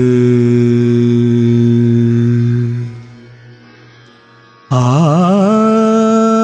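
A man singing a long, sustained vowel, unaccompanied, as a vocal prelude to a Hindi film song. The held note fades away about halfway through. After a short pause, another long note enters near the end, wavering as it slides up before it settles.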